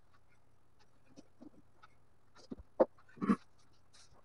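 A few short knocks and clunks from plywood cabinet parts being handled, the two loudest close together about three seconds in, after a quiet stretch of room tone.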